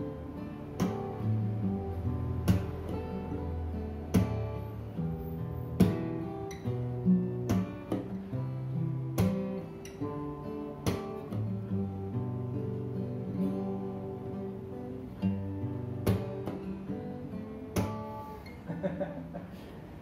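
Two acoustic guitars playing together, strumming chords with a strong accented strum every second and a half or so and ringing notes in between. The playing breaks off near the end, followed by a short laugh.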